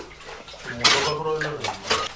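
Water splashing in a well, with sharp splashes in the second half and a man calling out over them about a second in.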